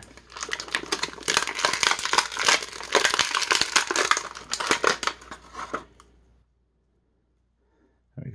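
Thin clear plastic bag around an action figure crinkling and tearing as it is pulled open: a dense crackle that stops about six seconds in.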